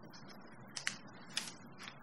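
A sheet of paper being folded and creased by hand: a few faint, sharp crackles of the paper.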